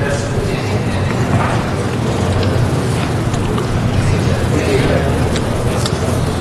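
Indistinct background chatter over a steady low hum, with a few faint clicks.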